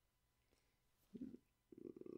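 Near silence, then about a second in a short low throaty sound, followed near the end by a man's low drawn-out grunt of excitement.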